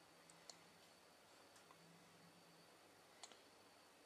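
Near silence: faint room tone with a low hum, broken by a few light clicks from small hand work with a paintbrush on a model part, the sharpest about half a second in and a quick double click a little past three seconds.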